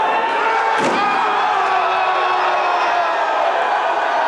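A wrestler slammed down onto the ring's canvas-covered boards: one sudden heavy slam about a second in, over the chatter and shouts of a small crowd.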